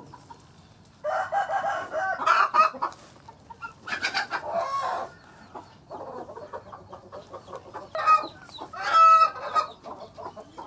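Chickens calling: three loud, drawn-out calls, with quieter quick clucking between the second and third.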